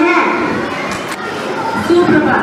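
A young boy's voice speaking into a microphone, breaking off just after the start, followed by the murmur of children's chatter in the hall.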